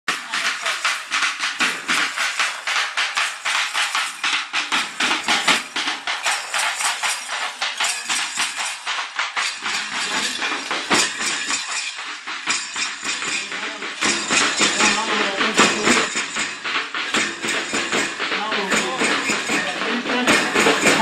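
Group of drummers beating slung barrel drums with sticks in a fast, steady rhythm, several strokes a second, with voices growing in the second half.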